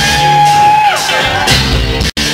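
Live rock band playing, with drums, electric bass and guitar under a loud shouted vocal that holds one high note for about a second at the start.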